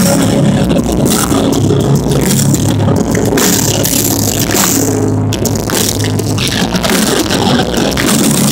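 Pop-punk band playing loud and continuous through an outdoor festival PA, heard from inside the crowd.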